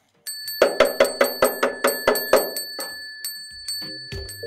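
A bright bell-like chime in a closing jingle: a ringing note struck rapidly, about four or five times a second, starting about half a second in and fading out after about three seconds, with music beginning at the very end.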